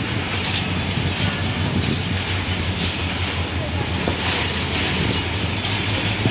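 Diesel-hauled passenger train rolling slowly past: a steady low engine drone under the rumble of the coaches on the rails.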